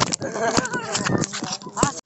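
Several young men's voices shouting and hooting over one another, with a couple of sharp knocks; it cuts off abruptly at the end.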